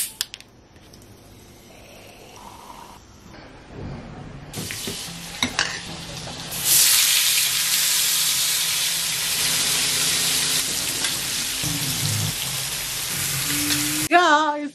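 Chicken pieces frying in melted butter on a flat pan, sizzling loudly and steadily from about seven seconds in, after a few sharp clicks of metal tongs.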